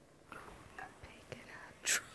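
A woman whispering softly under her breath, with a short sharp hiss of breath near the end.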